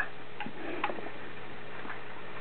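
Quiet room tone with a few small, brief clicks in the first second.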